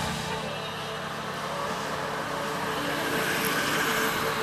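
A car engine running steadily with a low rumble, with people talking in the background.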